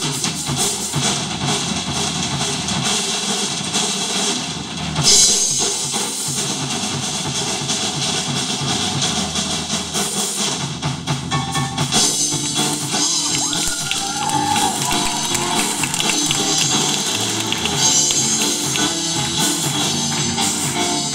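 Live band playing a song: drum kit prominent, with bass, guitar and piano.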